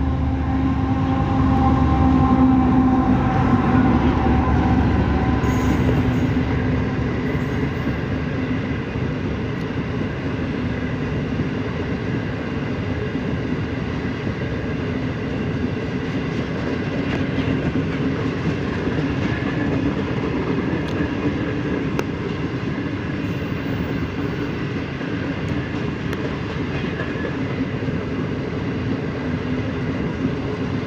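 Pakistan Railways ZCU-30 diesel-electric locomotive passing close by, its engine hum loudest a few seconds in, followed by the steady noise of a long rake of passenger coaches rolling past on the rails.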